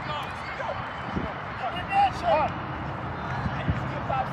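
Distant voices of players and onlookers calling out across an open sports field, a few short shouts standing out about two seconds in, over outdoor background noise.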